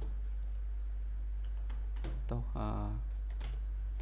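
A handful of scattered, sharp computer mouse and keyboard clicks over a steady low electrical hum.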